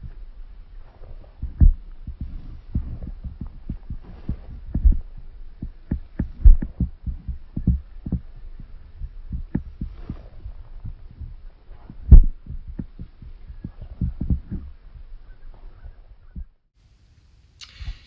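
Irregular low thumps and rumble on a handheld camera's microphone, typical of wind buffeting and handling as the camera moves outdoors, with a few louder knocks. The sound cuts off shortly before the end.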